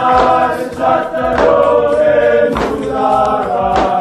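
A group of men singing together in harmony, holding long chords, with a strong accent about every second and a quarter.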